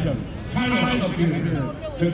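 A man's voice carried over a public-address system, the words not clear.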